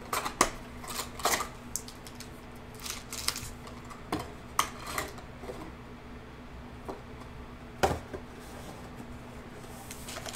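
Cardboard trading-card box being handled: scattered taps, scrapes and rustles, with the loudest knock near eight seconds in. A faint steady hum sits underneath.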